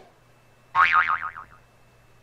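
A cartoon-style boing sound effect about a second in: a short springy twang whose pitch wobbles quickly up and down as it dies away.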